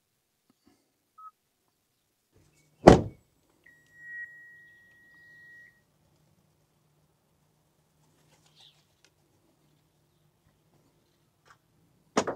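A car door shuts with a single loud thunk about three seconds in. A steady high electronic tone follows for about two seconds, over a faint low hum.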